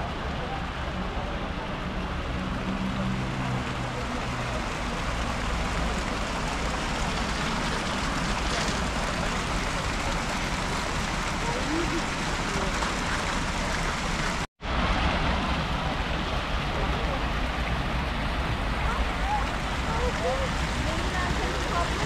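Fountain jets splashing steadily into a stone pool, with a crowd's voices chattering in the background. The sound cuts out completely for a moment about two-thirds of the way through.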